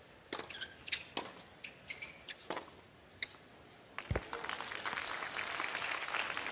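Tennis ball struck by racquets in a short rally on a hard court: a few sharp pops spread over about three seconds, with shoes squeaking on the court between them. About four seconds in the point ends and crowd applause starts and swells.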